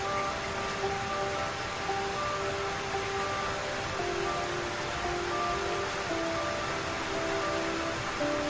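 Instrumental background music, a slow melody of held notes, over a steady hiss of falling rain.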